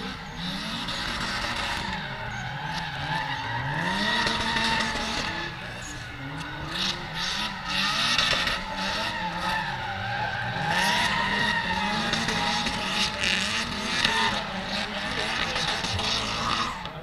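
Cars drifting, with engines revving up and down again and again under continuous, wavering tyre squeal.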